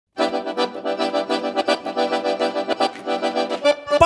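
Accordion (sanfona) playing a quick, rhythmic instrumental intro to a sertanejo song, a run of fast repeated chord pulses about five a second, easing off near the end.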